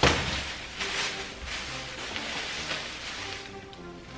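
A thin plastic bag crinkling and rustling as it is handled and pulled open, with the loudest crackle right at the start, over quiet background music.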